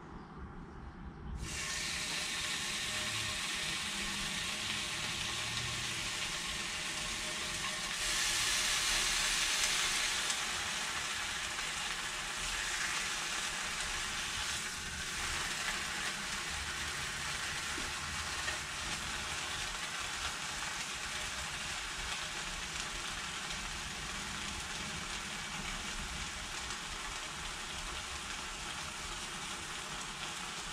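Sliced ham sizzling as it fries in a nonstick frying pan. The sizzle starts suddenly about a second and a half in as the ham goes into the hot pan, swells for a couple of seconds about eight seconds in, then holds steady.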